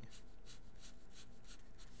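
Marker tip scratching across paper in quick repeated strokes, about five a second, as it hatches in a shaded area.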